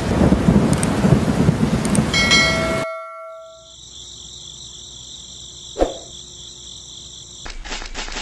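Thunderstorm sound effect, heavy rain and rumbling thunder, that cuts off abruptly about three seconds in, with a brief chime just before the cut. A steady, high, cricket-like chirring follows, with one sharp click in the middle, and a fast, even ticking starts near the end.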